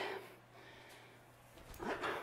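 Quiet room tone, then near the end a short, breathy grunt of effort with a brief falling pitch.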